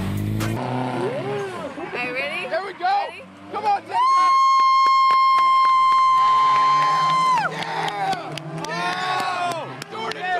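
Tyres screeching in one long, steady squeal of about three seconds while a car drifts, dropping in pitch as it stops. Spectators shout and yell before and after it.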